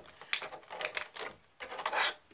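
Rigid plastic packaging tray clicking and crackling as it is handled, in a few irregular clicks.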